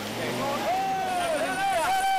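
Off-road pickup truck's engine running under load as it climbs through mud, with a wavering, arching tone over a steady rumble.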